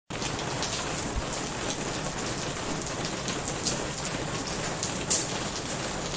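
Steady rain: an even hiss of falling rain with single drops standing out here and there.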